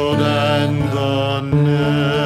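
Male voice singing a hymn, holding long notes over strummed acoustic guitar, with a new chord coming in about one and a half seconds in.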